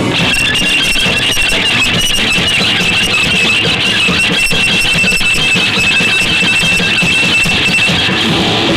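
Electric guitar feedback: a single high-pitched squeal, wavering a little at first and then held steady, over a noisy wash of band sound.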